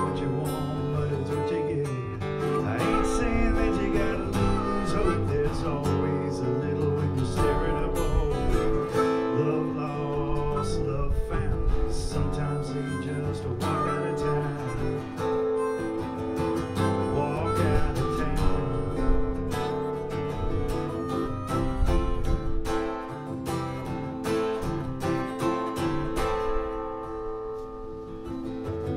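Acoustic guitar strumming with a harmonica playing over it, an instrumental break in a folk song.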